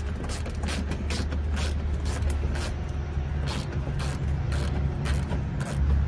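Small hand ratchet with a T15 Torx bit clicking as it backs out the factory Torx screws on a pickup's wheel-well liner: a quick, uneven run of clicks.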